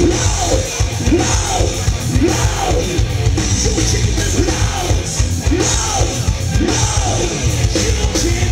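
Live hard rock band playing a heavy song: electric guitars, bass and drum kit, with a lead melody of arching notes that rise and fall about once or twice a second.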